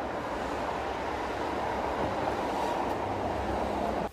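Steady rushing noise of city street traffic, with no distinct events, cutting off suddenly at the end.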